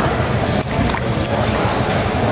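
Steady, loud background din of a busy market, with a continuous low drone underneath.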